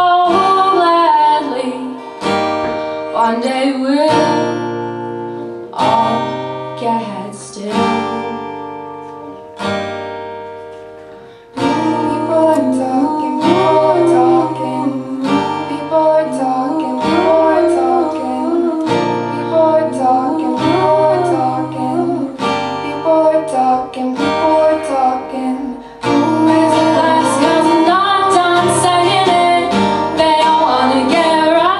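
Acoustic guitar strummed in chords with a female voice singing. For the first ten seconds or so the chords are sparse, each left to ring and fade; from about eleven seconds in the strumming turns steady and fuller under the singing.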